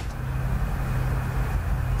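Steady low hum and hiss of background room and recording noise, with a single sharp click, like a key press, right at the start.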